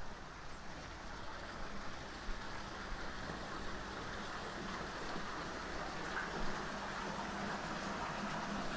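Steady splashing of running water from a garden water feature, slowly growing louder.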